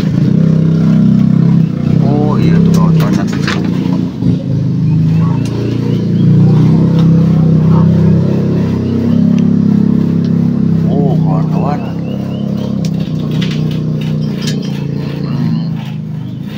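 An engine running steadily, its pitch stepping up and down a few times, with faint voices now and then.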